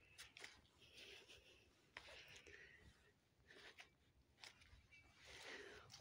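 Near silence, with faint scattered rustles and crunches of footsteps on dry fallen leaves.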